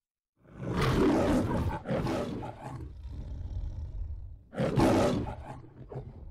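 Lion roaring: two roars back to back, a quieter growl, then a third roar shortly before the end.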